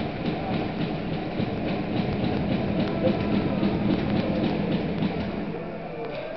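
Ice rink noise during a hockey game: a dense rumble with many quick clicks that eases off near the end, with faint music.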